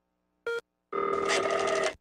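Telephone ring sound effect: a brief blip about half a second in, then a steady ring lasting about a second that cuts off just before the end.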